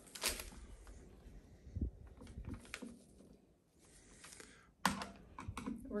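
Scattered light clicks and taps from hands and a thin metal tool working at the lid of a gallon can of primer, with a sharper click about five seconds in and a quick run of clicks near the end as the lid is worked open.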